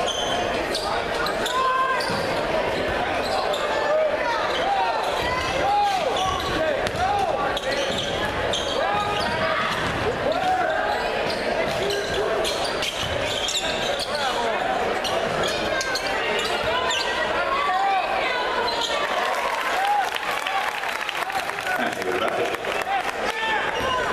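Basketball game in a gym: the ball bouncing on the hardwood court and many short sneaker squeaks, over the chatter of spectators' voices in the echoing hall.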